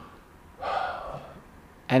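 A man's audible intake of breath close to a handheld microphone, lasting about half a second, in a pause between sentences. Speech starts again right at the end.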